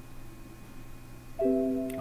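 A short computer chime, several steady notes sounding together, starts about one and a half seconds in and fades by the end; before it there is only faint hum. It sounds as the maintenance plan run completes successfully.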